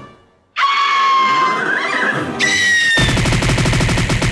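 Cartoon soundtrack effects over music: a held tone that falls slowly, starting suddenly about half a second in, a higher falling tone after it, then from about three seconds in a fast rattle of repeated hits.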